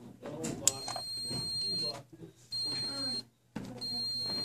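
A sharp click as a pushbutton on a relay control board is pressed, then a high-pitched buzzer beeping on and off: a longer first beep, then shorter beeps about every 1.3 seconds as the relay circuit cycles it.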